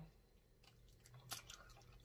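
Faint mouth sounds of eating meat off a cooked neck bone: near silence at first, then a few soft, short clicks of chewing and biting in the second half.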